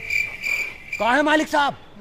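Cricket chirping in three short, high pulses, followed about halfway through by a brief human voice.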